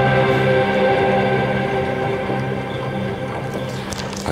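Film soundtrack music playing over cinema speakers: held, dark chords that slowly grow quieter toward the end.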